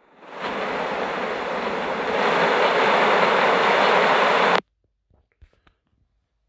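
Steady, loud hissing noise from a trail camera clip's audio track, played back on a phone. It steps up in loudness about two seconds in, then cuts off abruptly as playback stops, leaving only a few faint clicks.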